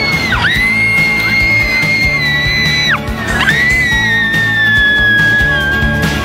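Two long, high-pitched screams, one after the other. Each swoops up, holds, then breaks off; the second sags slowly in pitch. Background music plays under them.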